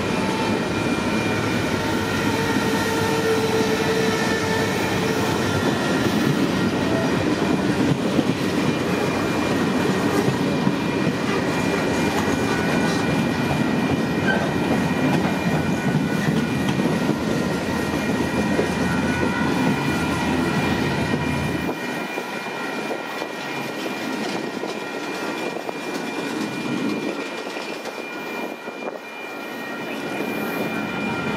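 Union Pacific mixed freight cars rolling slowly past close by: a steady rumble and clatter of wheels on rail, with thin, steady high squeals from the wheels as the train slows. The low rumble drops away about two-thirds of the way through.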